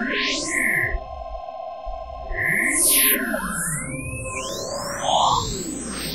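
Virtual ANS, a software emulation of the Russian ANS photoelectronic synthesizer, playing back a hand-drawn image as sound. Sliding tones arc up and then down in pitch over steady held tones, and thick smeared sweeps sound high up. The sound thins out for about a second early on before the glides return.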